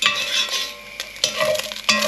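Browned beef mince sizzling in hot oil in an enamelled cast-iron casserole, with a metal slotted spoon scraping and clicking against the pot as the mince is scooped out.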